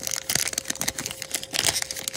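Topps Chrome baseball card pack wrapper crinkling and crackling as it is pulled open by hand, a rapid run of small crackles and rustles.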